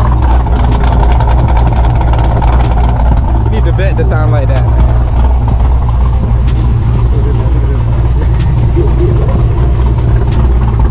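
Chevrolet Camaro's engine idling close by, a steady, deep low rumble that carries on throughout, with a muffled voice briefly over it near the middle.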